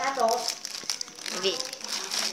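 Clear plastic wrapping crinkling as a child's hands pull at it. A short bit of voice comes right at the start, and another about a second and a half in.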